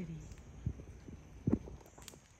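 Two soft, low thumps about a second apart, after a child's voice trails off at the very start.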